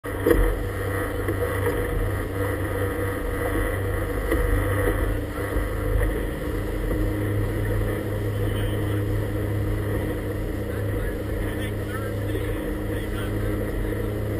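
The motor of a rigid inflatable boat running steadily underway, a constant low engine hum. There is a brief loud bump just after the start.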